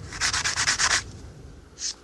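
A cast sterling silver bullet rubbed by hand on fine sandpaper in rapid, even back-and-forth strokes, which stop about a second in, with one short scrape near the end. This is the smoothing stage of the casting before buffing.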